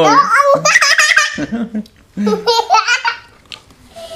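Hearty laughter in high-pitched, breaking bursts, with a second shorter bout about two seconds in.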